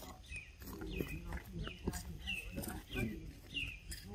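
A bird calling: about seven short, high chirps, each falling in pitch, repeated evenly roughly every two-thirds of a second. Softer low sounds lie underneath.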